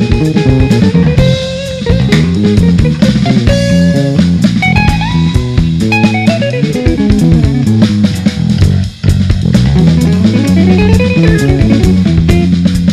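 Jazz trio playing live: electric bass carrying a busy line of moving notes over drum kit and cymbals, with electric guitar in the mix. The sound drops out briefly about nine seconds in.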